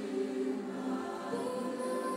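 A women's choir singing long held notes in harmony, moving to a new chord about halfway through.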